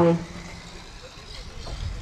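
A race announcer's voice breaks off at the start, then a faint steady background of 1:10 four-wheel-drive RC buggies running on the dirt track.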